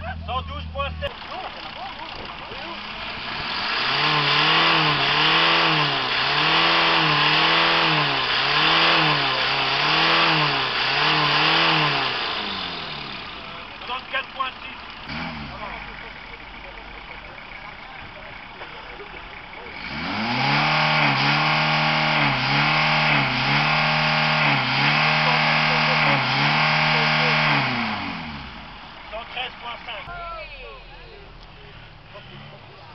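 Car engines free-revved hard at a standstill, one after the other, first a VW Golf Mk1 Cabriolet and then a VW Golf Mk2. Each is held at high revs with about five rises and falls roughly a second and a half apart, and there is a quieter pause between the two cars.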